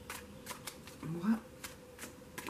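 Tarot cards being handled and shuffled in the hand, making a few short, soft card clicks spread across the two seconds.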